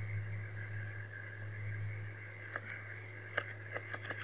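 A computer mouse clicking about four times in the second half, over a steady low electrical hum and faint hiss.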